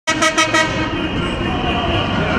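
Vehicle horns sounding in unison for the Victory Day horn action: four short toots in quick succession, then a horn held in a continuous blare.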